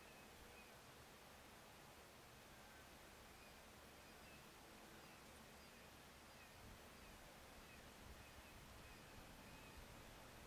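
Near silence: a faint steady outdoor hiss with a few faint, short high chirps scattered through it, and some low rumbles from wind on the microphone in the second half.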